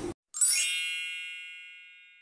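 A single bright, high-pitched chime sound effect, struck about a third of a second in and ringing out, fading away over about two seconds.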